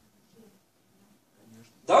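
A near-silent pause in a man's speech, with two faint, brief low sounds, then his voice resumes near the end.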